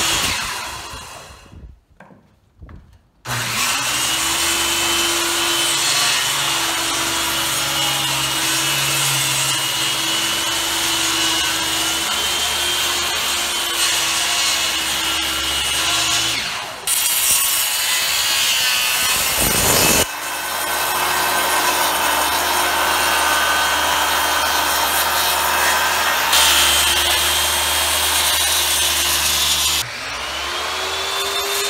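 Corded circular saw ripping a long pine board lengthwise, its motor running steadily under load. A brief burst comes at the start, then one long continuous cut from about three seconds in.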